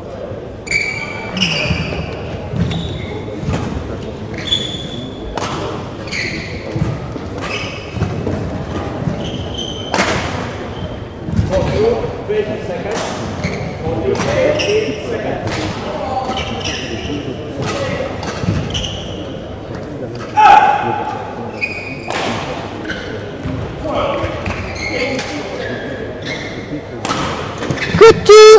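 Badminton play in a large, echoing sports hall: a run of sharp racket hits on shuttlecocks through the whole stretch, mixed with short, high shoe squeaks on the court floor. One louder sound stands out about twenty seconds in.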